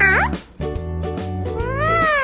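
Yellow Indian ringneck parakeet mimicking 'good girl' with a quick upward-sliding voice, then, near the end, a drawn-out 'woooo' that rises and falls in pitch. Background music plays underneath.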